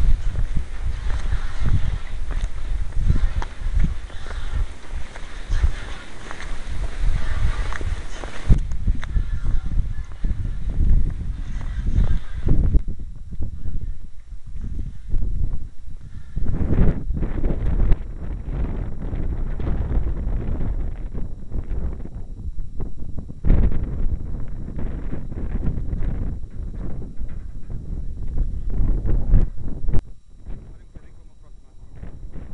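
Work boots stepping along a riveted steel bridge girder, making a run of irregular low thuds. A hiss sits over the steps for the first eight seconds or so.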